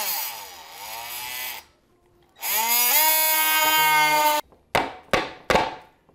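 Cordless oscillating multi-tool plunge-cutting a hole in drywall. It makes two runs of about two seconds each with a short pause between, the pitch sagging as the blade bites in. Near the end come several short trigger bursts, each dropping in pitch as the motor winds down.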